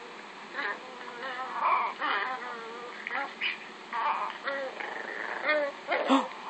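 Newborn Chihuahua puppy crying, a string of short pitched cries one after another, played back from a video on a tablet.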